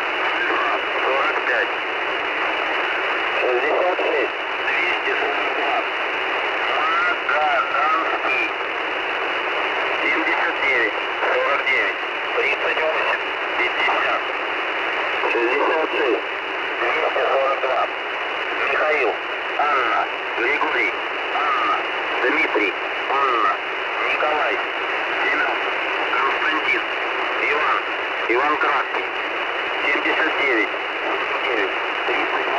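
Shortwave receiver static from the Russian military station 'The Squeaky Wheel' (Al'fa-45) on 5473 kHz, with a weak voice reading out a message of number groups and a code word barely above the hiss.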